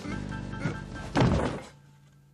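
Film score music, broken a little after a second in by one loud heavy thud from upstairs, like a body hitting the floor. The sound then fades out quickly.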